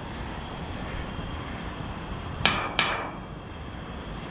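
Two sharp metal clanks, about a third of a second apart, roughly two and a half seconds in, over a steady low background noise. They come from the radio tower's metalwork as the climber moves on it, a noise he finds hard to keep down.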